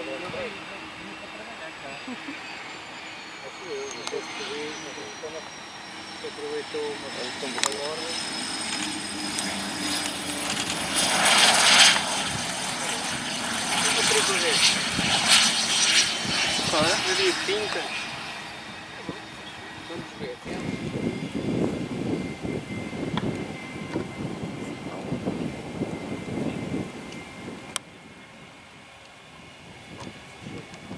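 Cessna Citation CJ3 business jet landing and rolling out, its twin Williams FJ44 turbofans giving a high whine that slides slowly down in pitch. The jet noise swells to a loud rush between about 11 and 17 seconds in, then falls away to a faint steady whine as the jet slows to taxi speed.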